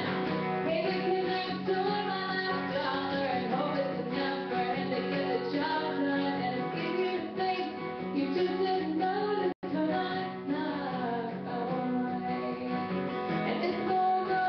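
Live acoustic guitar strummed steadily, accompanying a woman singing. The sound cuts out completely for an instant about two-thirds of the way through.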